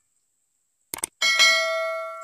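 Subscribe-button animation sound effect: a quick double mouse click about a second in, then a bright notification-bell ding that rings on and slowly fades.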